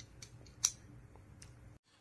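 A few faint, light clicks of small metal parts being handled: a pointed pin tool and a 1911 pistol magazine. The sharpest click comes about a third of the way in, and the sound drops out to dead silence just before the end.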